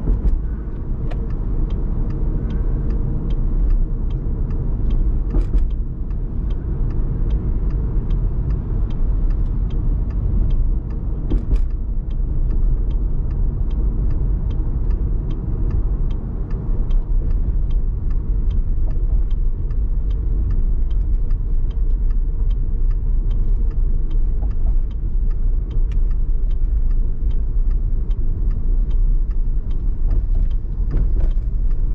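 Car driving at expressway speed: a steady low rumble of road and tyre noise. A light, regular tick sounds about twice a second throughout, with two sharper clicks about five and eleven seconds in.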